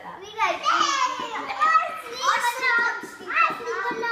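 Young children's high-pitched voices talking and calling out, with no words clear enough to make out.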